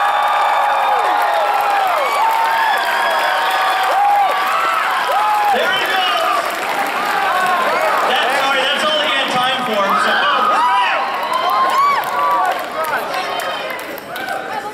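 A large audience cheering and applauding, many voices calling out and whooping at once over the clapping, easing slightly near the end.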